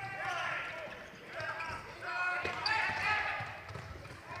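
On-court sounds of a floorball game in an echoing sports hall: players calling out and shoes squeaking on the court floor, with a sharp click of a stick on the ball about two and a half seconds in.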